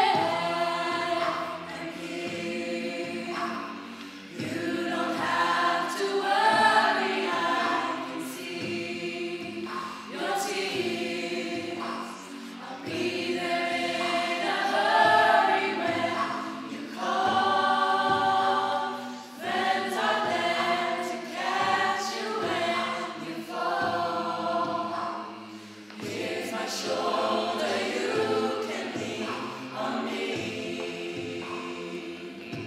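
Mixed-voice a cappella group singing in close harmony with no instruments, solo voices at the microphones over the backing singers, in phrases a couple of seconds long.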